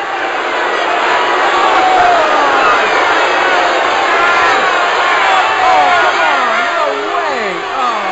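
Football crowd cheering and yelling, fading up over the first second into a steady din of many voices. Individual shouts and whoops stand out above it, more of them near the end.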